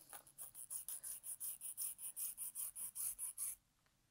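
Faint, rhythmic scratching of a fabric marker drawn in short strokes along a ruler on quilted fabric, about four strokes a second, stopping abruptly near the end.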